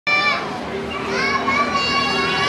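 Children's voices calling out in high, drawn-out shouts, with pitches held and sliding for close to a second at a time.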